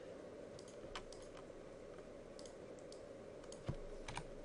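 Scattered light clicks of a computer mouse and keyboard, about a dozen in all, with a sharper click near the end, over a faint steady low hum.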